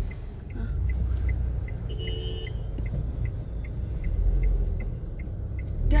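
Car turn signal ticking steadily, about two and a half ticks a second, over the low rumble of the car moving slowly. About two seconds in comes a short two-tone car-horn beep lasting about half a second.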